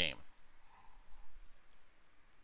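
A spoken word ends, followed by a pause of faint background hiss with a few faint clicks.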